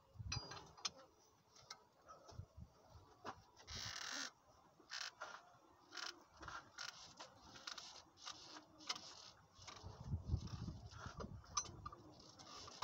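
Rubber A36 V-belt being worked by hand onto the air-compressor pulley of an OM 366 LA truck engine, engine off: short scraping and rubbing sounds with small clicks and knocks, and a low thump near the end.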